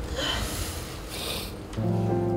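A young man crying: two sniffles through the nose, about half a second and a second and a quarter in. Background music comes back in near the end.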